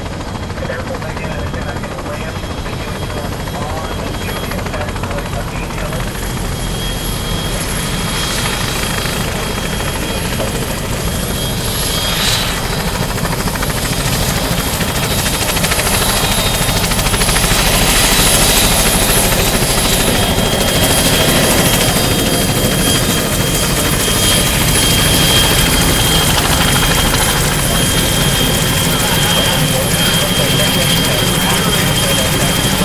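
Boeing CH-46 Sea Knight tandem-rotor helicopter taxiing with its rotors turning. Its twin turboshaft engines give a steady high whine over the rotor rumble, and the sound grows louder over the first two-thirds as it comes closer.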